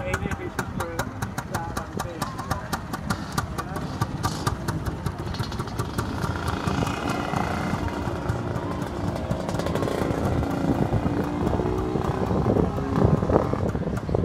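A small scooter engine running with a rapid, even popping, under people talking.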